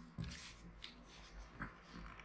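Faint handling noise of a plastic camera drone being turned over in the hands, with a few soft clicks and rustles.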